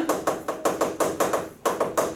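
Chalk tapping and scratching on a chalkboard as words are written: a quick run of sharp clicks, about five a second.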